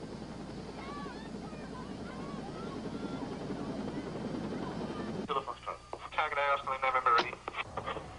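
A steady low rushing noise for about five seconds, then a voice speaking briefly near the end.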